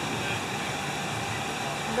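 Steady background hum and hiss, like running machinery, with a few faint constant high tones; no distinct events.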